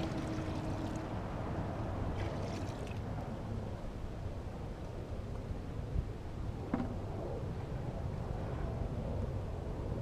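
Water poured from a bucket into a portable recirculating wet classifier, running down into its pump reservoir, over a steady low rumble. A short knock comes about six seconds in.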